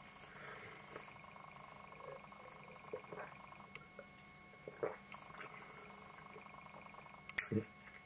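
Quiet room tone with a faint steady hum, and a few soft sounds of beer being sipped from a glass and swallowed. A short, louder mouth or breath sound comes near the end.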